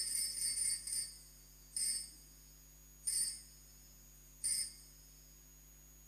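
Altar bells rung at the elevation of the consecrated host: a ringing that fades out about a second in, then three short rings about a second and a half apart.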